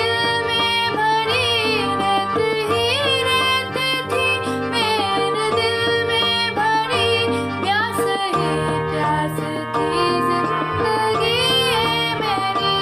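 A woman singing a slow, ornamented melody with sliding notes over a keyboard accompaniment of held chords and a repeating bass line; the bass pattern shifts a little after the midpoint.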